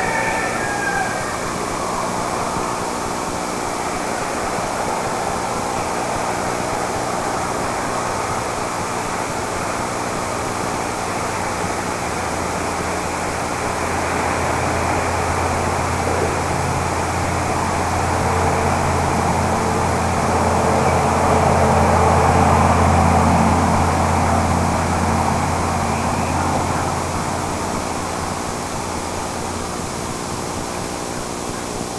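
A distant engine drone over a steady hiss. It comes in about twelve seconds in, swells to its loudest a little past twenty seconds, and fades toward the end.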